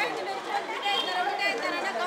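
Crowd chatter: several people talking at once, voices overlapping.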